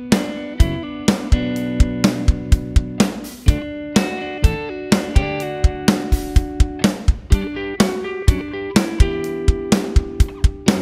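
A rock band playing an instrumental intro: guitars holding chords over a steady drum-kit beat.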